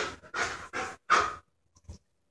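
Dog panting close to the microphone: four quick, breathy pants about a third of a second apart, which stop after about a second and a half.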